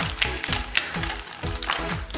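Crinkled plastic toy-ball wrapping rustling and crackling in the hands as it is pulled open, in quick irregular clicks, over quiet background music.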